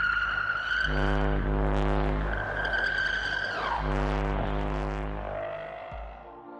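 Eerie electronic tones: a low humming drone with many overtones alternates in blocks of a second or so with a high held whistle-like tone, which slides down in pitch about three and a half seconds in. The sound is presented as a recording of a claimed alien contact signal, and it fades near the end.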